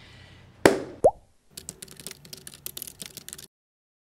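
Sound effects: a sharp knock, then a short rising plop, then about two seconds of rapid, irregular keyboard-typing clicks that stop suddenly.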